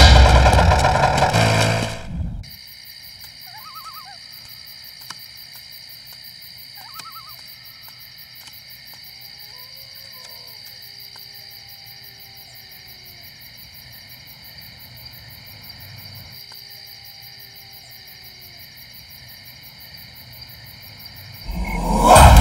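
Loud soundtrack music cuts off about two seconds in and gives way to a quiet night ambience. In it, a steady high chirring of night insects runs under owl hoots: two short calls, then two longer gliding calls. The music returns just before the end.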